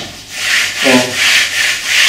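Toko Edge Tuner Pro edge sharpener with a diamond file, rubbed back and forth along a steel side edge in quick repeated strokes. Its rasping, sanding sound marks edge polishing with the diamond file under light pressure.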